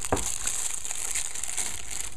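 Clear plastic wrapping crinkling as a new mobile phone is pulled out of it: a steady rustle.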